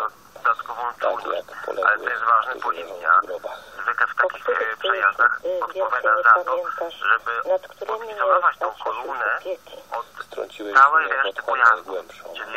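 Only speech: a voice talking continuously in short phrases, with no other sound.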